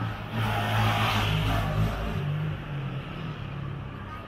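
A motor vehicle passing close by on the street: a rush of engine and tyre noise over a low engine hum, swelling about half a second in and fading away after about two seconds.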